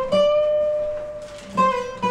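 Acoustic guitars playing: notes struck just after the start and again about a second and a half in, each left to ring and fade.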